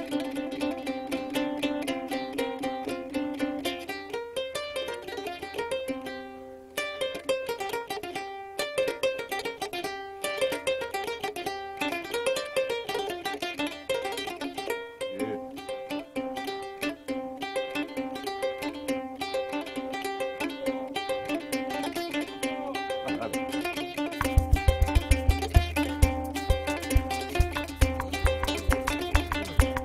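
Solo on a double-necked plucked string instrument: quick plucked notes in rising and falling melodic runs over a repeated low note. About four seconds before the end a low, regular beat joins in.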